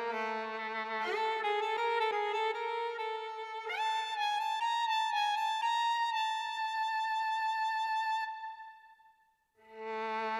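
Background music: a slow violin melody. A long held note fades away near the end and the music starts again just after.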